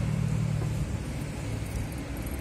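A steady low engine rumble with a hum that is a little stronger in the first second.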